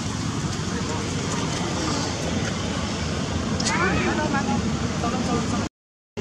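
Steady outdoor background noise with a murmur of voices, and a short squeaky call that rises and falls about four seconds in. The sound cuts out just before the end.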